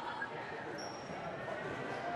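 Steady low murmur of a gymnasium crowd, with no distinct bounces or impacts.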